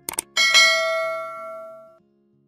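Two quick clicks, then a single bell-like ding that rings and fades for about a second and a half before cutting off suddenly: a subscribe-button click and notification-bell sound effect.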